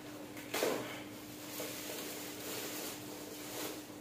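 Clear plastic bag rustling and crinkling as a toaster is handled and pulled out of it, with one louder crinkle about half a second in and softer rustles after. A faint steady hum lies underneath.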